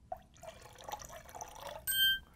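Lime juice poured in a thin trickle from a bottle into a stainless steel cocktail shaker. Near the end a short electronic ding sounds from the Perfect Drink scale app, signalling that the measured amount has been reached.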